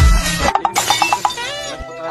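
Music with a sudden shattering crash about half a second in, preceded by a deep hit. It has the ring of an edited-in sound effect.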